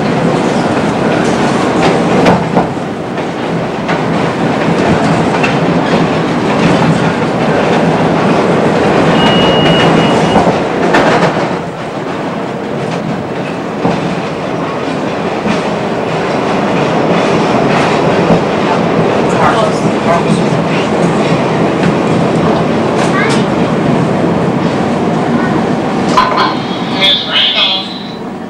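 Chicago L rapid transit train running on the elevated Loop tracks, its wheels clattering over rail joints and switches, with a short high steady tone about nine seconds in.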